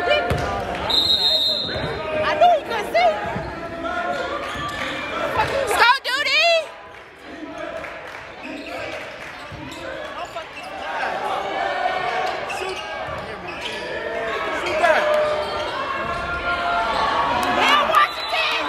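Basketball game in a large gym: voices of players and spectators, a basketball bouncing on the hardwood and sneakers squeaking, with a short high whistle blast about a second in.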